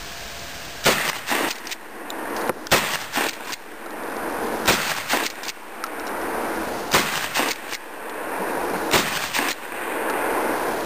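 Mossberg 500 pump-action shotgun fired with buckshot five times, about two seconds apart. Each shot is followed by a few short clacks as the pump is racked for the next round.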